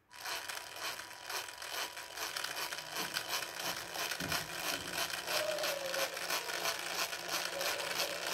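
Small 300 RPM geared DC motor switching on and running with a steady, rapidly ticking gear whirr, its speed set through PWM by the controller.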